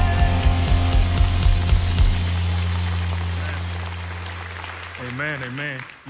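A live worship band ends a song: the drums and bass stop about two seconds in, leaving a held chord that slowly fades out. A voice comes in near the end.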